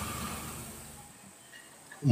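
Pause in a man's lecture into a microphone: only a faint steady hiss, fading lower through the pause.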